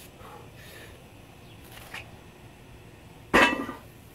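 Atlas stone landing on a steel crossbar: one sharp hit a little past three seconds in, with a brief metallic ring that fades quickly.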